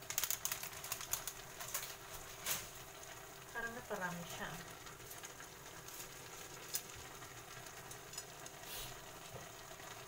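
A plastic noodle wrapper crinkling as it is handled over a cooking pot during the first few seconds, followed by fainter sounds of food cooking in the pan.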